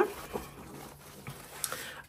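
Satin ribbon closure being untied and pulled loose from a thick handmade paper journal: faint rustling with a few soft ticks.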